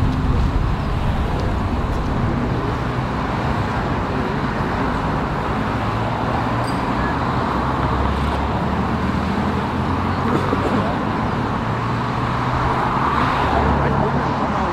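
Steady road traffic noise with a low engine hum, with faint voices in the background.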